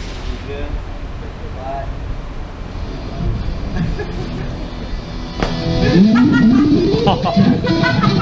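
Electric guitar on stage heard through a backstage doorway: low and muddy at first, then a sharp loud hit about five and a half seconds in, followed by a rising pitched slide and further notes near the end.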